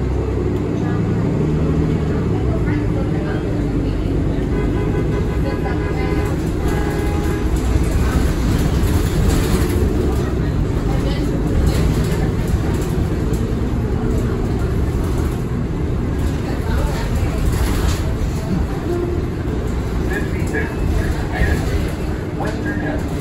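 Cabin noise of a Nova Bus LFS city bus under way: steady low engine and road noise throughout. Passengers' voices are faintly heard in the background.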